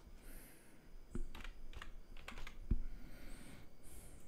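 Computer keyboard typing: a handful of short keystroke clicks between about one and three seconds in.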